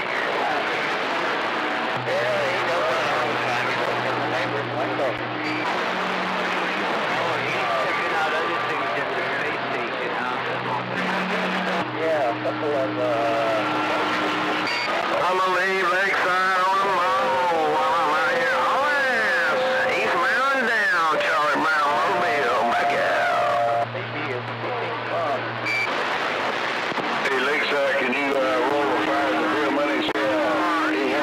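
CB radio receiver audio on a crowded channel: constant hiss with several stations talking over each other, garbled and hard to make out. Steady whistles of different pitches come and go. From about halfway through, warbling, pitch-sliding voices take over for several seconds.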